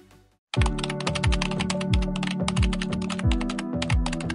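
Rapid computer-keyboard typing sound effect over music with a steady low beat, both starting suddenly about half a second in after a moment of silence.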